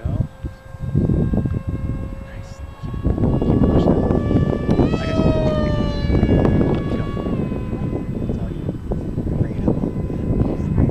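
Electric motor of a radio-controlled foam F-15 Eagle model whining in flight: a steady whine that jumps up in pitch about five seconds in, slides down, and drops back a little after seven seconds. Loud low rumbling noise lies under it throughout.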